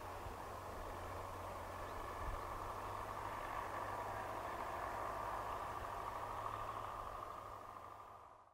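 Faint, steady outdoor background noise with a low hum underneath and no distinct bird calls, fading out at the very end.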